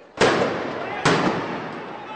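Two loud explosive bangs about a second apart, like firecrackers or blast devices going off at a street clash, each followed by a dense wash of noise as it dies away.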